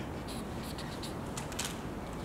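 Paper rustling and light clicks from the pages of a picture book being handled and turned, a few short rustles scattered through, over a faint low room hum.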